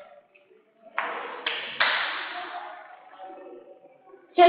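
Three sharp taps or knocks in quick succession about a second in, each ringing out and fading slowly in a reverberant room.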